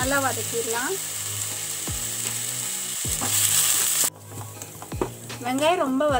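Chopped onions, green chillies and curry leaves sizzling in hot oil in a stainless steel kadai while being stirred with a spatula. The sizzle grows louder, then cuts off suddenly about four seconds in.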